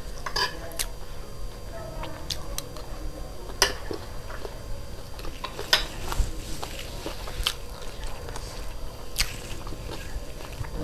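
Close-miked chewing of a crunchy puffed-rice chatpate snack, with a few sharp clinks of a metal spoon against a ceramic plate.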